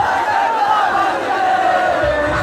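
A large crowd shouting and singing together, loud and steady, with no bass beat underneath.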